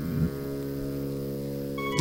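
A sustained chord of steady tones held on a keyboard instrument as background music, with a short vocal sound about a quarter of a second in.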